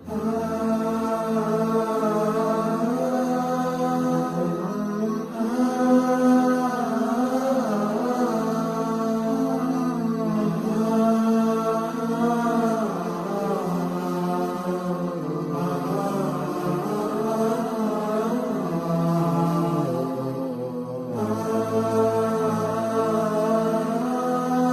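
Background music of melodic vocal chanting over a steady low drone, with a short break about 21 seconds in.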